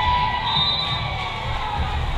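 Crowd of spectators cheering and shouting in a gymnasium during a volleyball rally, several voices calling out at once.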